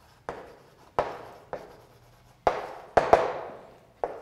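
Chalk on a blackboard as a word is written: a series of sharp chalk knocks and short scrapes, each trailing off, about six in all, the loudest ones near the end.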